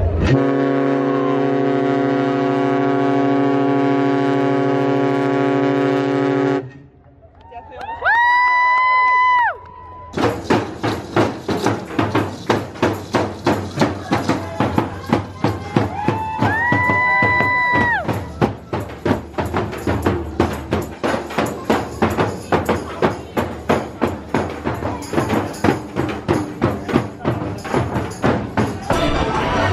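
Ship's horn sounding one long, steady blast for about six seconds as the ship crosses the equator. After a short pause comes a high whistled tone, heard twice, over a run of steady hand-drum beats that continue to the end.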